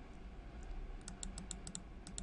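A quick run of about seven light clicks, packed into less than a second starting about halfway in, from a computer mouse clicked repeatedly, over a low steady hum.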